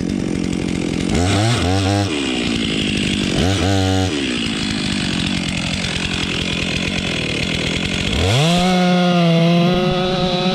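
Stihl MS 362 two-stroke chainsaw idling, with two short throttle blips. About eight seconds in it revs up to full throttle and cuts into a massive oak trunk, its pitch sagging a little under the load near the end.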